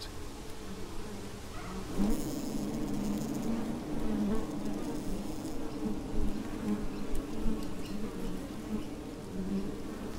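Wild honeybee colony buzzing at its entrance in a hollow tree trunk: a steady hum of many bees, a little louder from about two seconds in.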